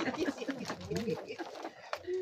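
Several people talking at once, their voices overlapping into indistinct chatter.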